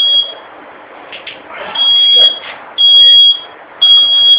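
A high-pitched electronic alarm beeping, each beep about half a second long and repeating about once a second, over a faint steady background noise.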